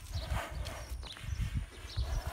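A bull's hooves stepping on a dirt lane as it is led forward, a run of dull, irregular thuds.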